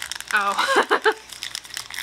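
Foil booster-pack wrapper crinkling as hands tear it open.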